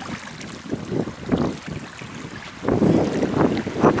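Wind buffeting the microphone in uneven gusts, louder in the last second or so.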